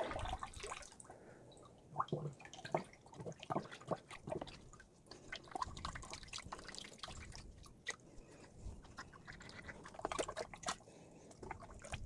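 A gloved hand swishing and stirring water in a plastic tote, mixing in nutrient concentrate: faint, irregular splashes and drips.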